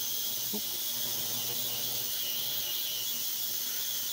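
Ultrasonic cleaner running: a steady high-pitched hiss from its bath as it cleans, with a faint low hum underneath.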